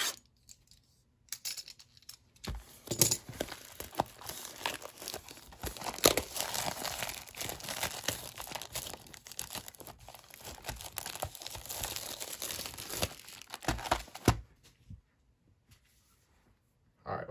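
Plastic shrink-wrap being torn and peeled off a cardboard trading-card hobby box, crinkling with many sharp snaps. It stops a couple of seconds before the end.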